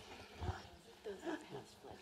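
A lull in the room: faint, distant voices murmuring briefly a few times.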